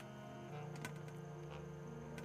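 Quiet room tone: a faint steady hum, with a few light clicks about a second in as things are handled on the table.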